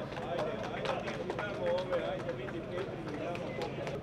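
A crowd of men talking and calling over one another at close quarters, several voices at once, with scattered sharp clicks through the din.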